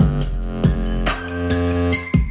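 Electronic music played through a Savard 6.5-inch HiQ subwoofer and Elac bookshelf speakers, driven by a budget four-channel car amplifier at about 100 watts. It has deep, sustained bass notes and sharp drum hits.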